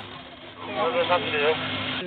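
A steady low hum with noise, and from about half a second in, a thin, narrow-band voice speaking: fire-dispatch radio traffic from the scene, announcing a first-stage response.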